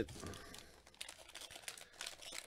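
Foil wrapper of a trading-card pack crinkling faintly as the pack is handled, in a few small scattered crackles.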